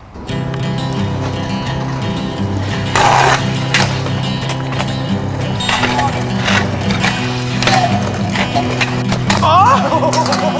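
Music starts almost at once and runs under the riding. Over it, a kick scooter's wheels roll and clack on concrete, with a louder scrape or impact about three seconds in.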